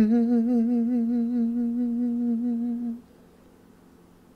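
A man humming one long held note with closed lips and a gentle vibrato, the closing note of an unaccompanied song. It cuts off about three seconds in.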